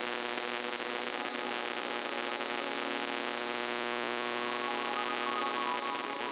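MFSK32 digital text signal received on a shortwave AM receiver: data tones buried in heavy static and noise, with steady hum-like tones underneath and a few brighter tones coming through about four seconds in. The noise is strong enough that the signal decodes as mostly garbled text.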